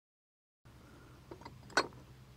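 Dead silence at first, then a few small clicks and one sharper click near the end: a roof-rack crossbar's clamp foot being handled against the roof rail.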